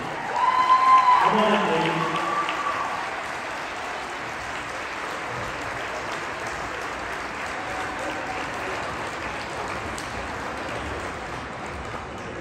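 Audience applauding, with a few cheering shouts in the first two seconds, then steady clapping.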